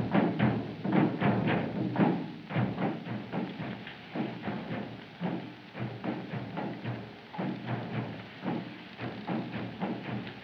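Drums beating a steady rhythm, about two strokes a second, louder for the first few seconds and then softer.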